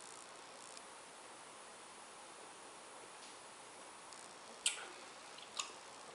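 Faint room hiss while beer is tasted, then two short wet lip smacks about a second apart near the end, the first the louder, as the beer is savoured.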